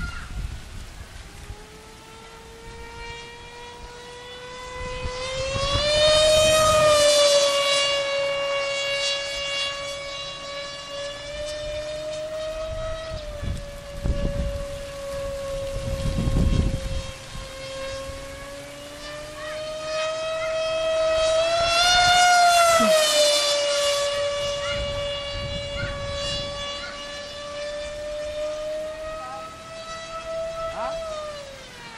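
FunJet radio-control jet's electric motor and pusher propeller whining at full speed as it flies passes. The high steady whine swells louder and bends up then down in pitch about 6 seconds in and again around 22 seconds in. A few low rumbles on the microphone come and go.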